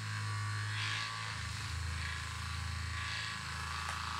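Handheld percussion massage gun running pressed against the shoulder-blade muscles, a steady low buzz that drops to a deeper hum about a second in.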